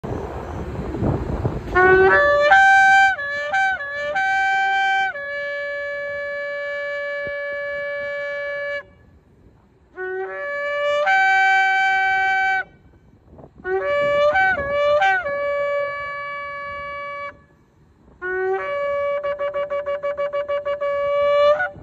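A long, twisted horn shofar blown in four calls with short pauses between them. Each call opens with short notes jumping between two or three pitches and settles into a long held note. The last call, near the end, breaks into a rapid run of short staccato pulses.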